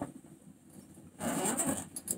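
A brief rustling scrape about a second in, lasting under a second, after a single click at the start.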